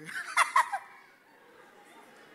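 A brief, high warbling vocal cry with two loud peaks, lasting under a second, then quiet room tone.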